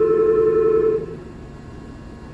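A steady electronic tone at a monorail platform, held for about a second and then cutting off, leaving only faint station background.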